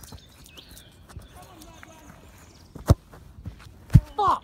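Two short, sharp thumps about a second apart in the last second and a half, with faint bird chirps in the first second.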